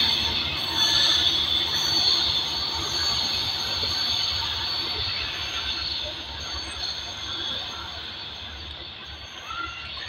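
Diesel-hauled passenger train running away along a curve, its wheels squealing on the rails with a steady high ring over a low rumble. The whole sound fades gradually as the train recedes.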